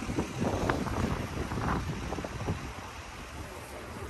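Wind on the phone microphone: a steady low rumble, with a few faint knocks from the phone being handled as it moves.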